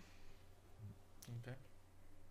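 Near silence: room tone with a steady low hum. There is a single faint click a little past the middle, and a brief spoken 'okay' just after it.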